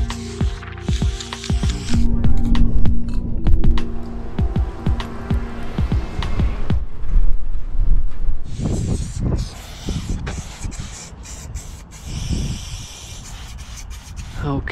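Background music with a steady beat, and in the second half aerosol spray-paint cans hissing in short bursts.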